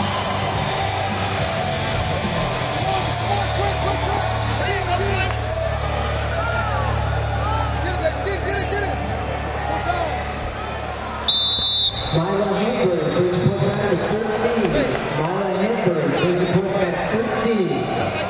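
Busy arena hubbub of a wrestling tournament, with many voices and background music. About eleven seconds in, a referee's whistle gives one short, shrill blast. Louder shouting voices follow it.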